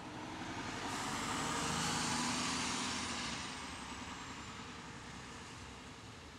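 Motor coach driving past on the road, its engine and tyre noise swelling to a peak about two seconds in and then fading as it pulls away, with a faint high whine that drops slightly in pitch.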